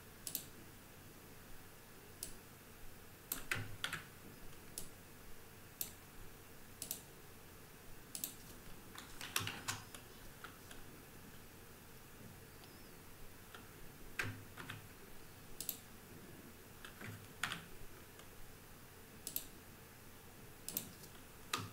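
Quiet, sparse keystrokes on a computer keyboard: single taps and short runs of clicks, irregularly spaced every second or two.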